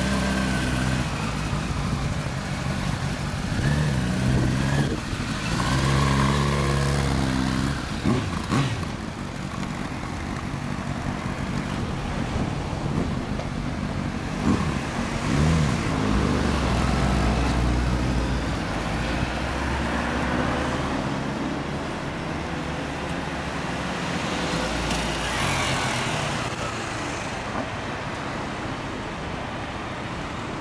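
Sport motorcycles pulling away and riding off, engines running with the revs rising and falling, among them a Honda CBR1000RR Fireblade's inline-four through a Moriwaki aftermarket exhaust. Other road traffic runs underneath.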